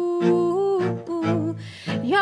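Bowed cello playing short, repeated low notes, about two a second, under a long held hummed note that wavers slightly and fades out about a second and a half in.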